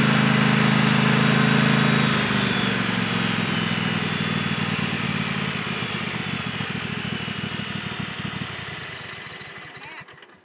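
Riding lawn tractor's small engine running steadily. After about two seconds it eases off, and it fades slowly away toward the end.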